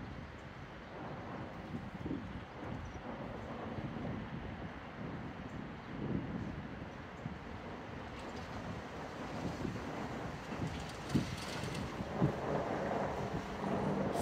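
Outdoor wind buffeting the microphone: a steady rushing noise with irregular low rumbles.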